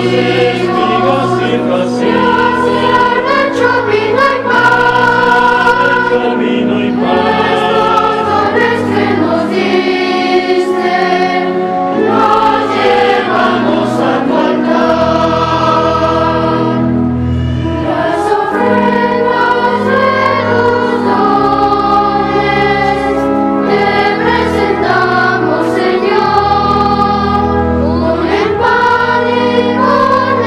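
Church choir singing a hymn, held notes moving in chords over a steady low accompaniment.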